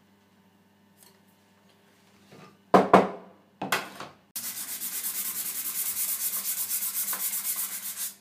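A few knocks as a copper-clad circuit board is set down on a wooden workbench, then fast, even back-and-forth scrubbing of its copper face with an abrasive powder, cleaning the copper.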